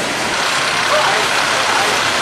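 Steady outdoor street noise, an even hiss with no rhythm, with faint snatches of distant voices about a second in.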